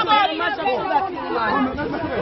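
A crowd of people all talking over one another at once, with no single voice standing out.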